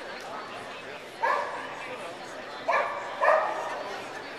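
A dog barks three times, once about a second in and then twice in quick succession near the end, over a background of crowd chatter.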